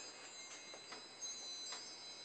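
Bar chimes (a mark tree) tinkling faintly, a few soft, high ringing taps as the bars touch. There is no wind to move them; the owner puts their swaying down to the house shaking in an earthquake.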